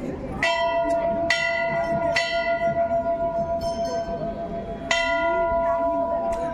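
A hanging metal temple bell struck four times: three strokes about a second apart, then one more near the end. Each stroke rings on with the same clear, lasting tone.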